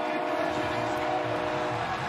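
A held chord of several steady tones that stops shortly before the end, over a low rumble.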